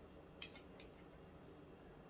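Near silence: room tone, with two or three faint light clicks about half a second to a second in.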